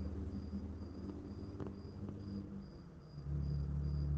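A cricket chirping steadily in the background, an evenly pulsed high trill, over a low hum that swells about three seconds in.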